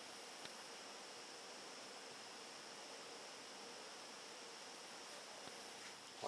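Near silence: faint steady hiss of room tone, with one faint click about half a second in.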